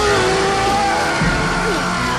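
Horror film soundtrack: loud music with voices crying out over it.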